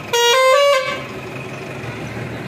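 A vehicle horn sounds once, for under a second, in a few short notes stepping up in pitch.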